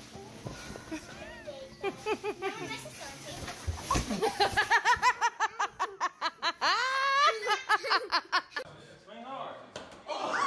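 Young children laughing and squealing in quick high-pitched bursts, with a thump about four seconds in. The laughter peaks in a high rising squeal near seven seconds, then dies down.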